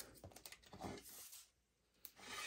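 Near silence with a few faint light clicks and rustles of cardstock strips and double-sided tape being handled.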